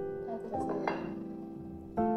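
Background piano music: slow, sustained chords changing every half second to a second or so.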